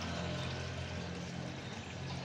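Steady low hum of a motor over an even hiss like running water.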